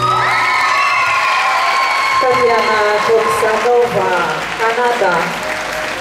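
Arena audience applauding and cheering right after the routine music stops. From about two seconds in, an announcer speaks over the public-address system.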